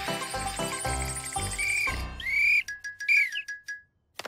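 Cartoon score music with a pulsing beat for about the first two seconds. Then come a few short whistle-like chirps that rise and fall, and a quick run of clicks over a steady high tone. The sound drops out just before the end.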